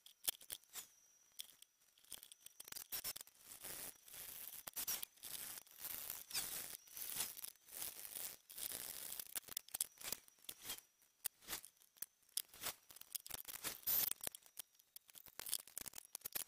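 Faint, irregular clicks, taps and scrapes of hand work: 5.25-inch marine speakers being set into a plywood speaker box and screwed down with a screwdriver.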